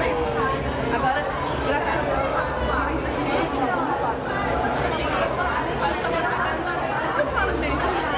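Women talking and laughing close to the microphone over the chatter of a crowd in a large hall.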